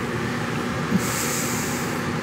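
Steady workshop background noise: a low hum under a broad rushing noise, with a high hiss joining about a second in.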